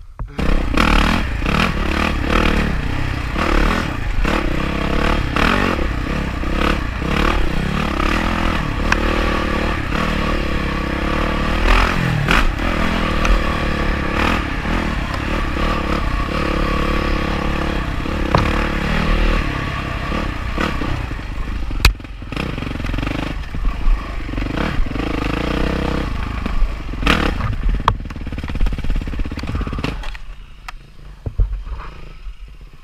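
Yamaha dirt bike engine, heard on board, pulling away and running along a rough forest trail, its revs rising and falling. Clattering and knocks from the bike run through it, with a couple of sharp clicks late on.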